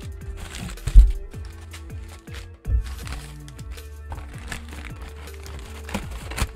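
Packing paper crumpling and rustling as it is pulled out of a cardboard box, over background music. Two heavy thumps, the loudest about a second in and another a little before the middle.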